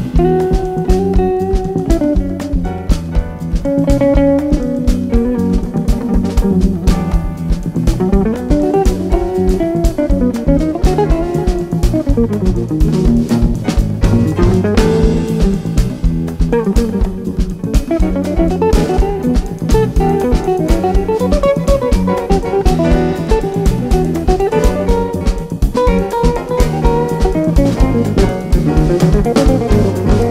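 Live jazz-fusion band playing: an electric guitar runs a fast, winding melodic line over a busy drum kit groove and a steady electric bass.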